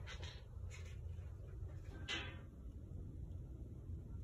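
Low, steady hum of air moving through an office HVAC system's ceiling supply diffusers, with a brief rustle about two seconds in.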